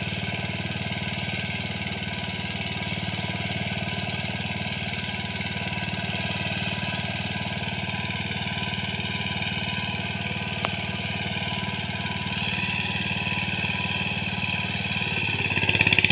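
Power tiller engine running steadily as it puddles a wet paddy field, growing a little louder near the end, with a single brief click about ten seconds in.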